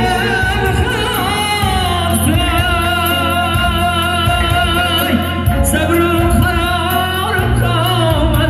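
A male singer singing an Uzbek song live through a microphone and PA, his melody held long and ornamented with a wavering vibrato, over an electronic keyboard and a doira frame drum.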